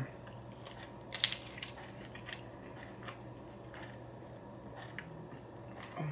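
Mouth sounds of someone chewing cheese pizza close to the microphone: a few scattered crunches and clicks, the loudest a little over a second in, over a steady low hum.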